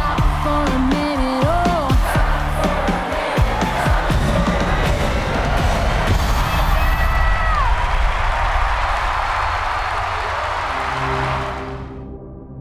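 A pop song's final bars, a woman's lead vocal over a live band, giving way to a large arena crowd cheering. The sound fades out near the end.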